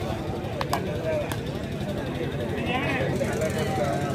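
Babble of many voices from a crowd of spectators around a kabaddi court, with three sharp clicks in the first second and a half.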